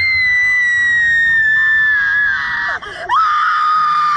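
A woman screaming on a slingshot amusement ride. One long, high scream slowly falls in pitch, then after a brief break about three seconds in, a second, lower scream is held steady.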